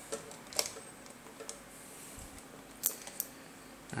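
Sharp plastic clicks and taps as a power adapter is handled and pushed into a wall socket: two distinct clicks, about half a second in and just under three seconds in, with a few fainter ticks between.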